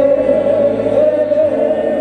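Voices singing a gospel song together in long held notes, with a low steady tone underneath that drops away about a second and a half in.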